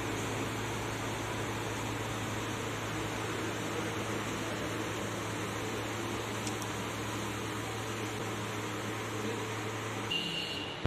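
Steady room noise: a low, unchanging machine hum under an even hiss.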